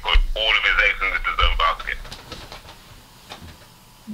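A man's voice coming over a telephone line, thin and tinny, for about the first two seconds, after which the line goes quiet.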